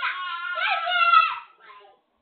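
A young child's high-pitched, drawn-out squeal, bending up and down in pitch and lasting about a second and a half, followed by a shorter, fainter one near the end. It sounds thin, as picked up by a home security camera's microphone.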